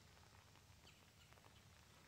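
Near silence: faint outdoor ambience with a few faint scattered ticks.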